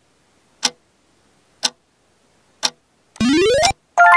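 Countdown timer ticking once a second, three ticks, then a short, loud rising electronic sweep about three seconds in as the bingo caller app draws the next number.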